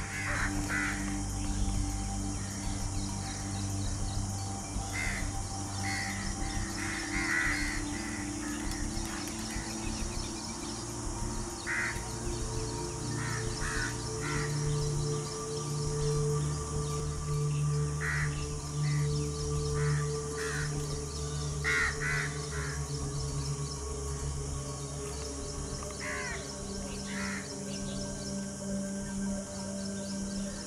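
Short bird calls in small clusters every few seconds, over background music of long held low notes that shift about twelve seconds in.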